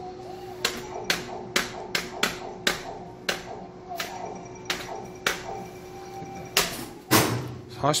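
Arcade hammer-strike prize machine sounding a run of sharp ticks that come further and further apart as its target number rolls and settles. Under the ticks runs the machine's steady electronic hum and tune, and a louder knock comes about seven seconds in.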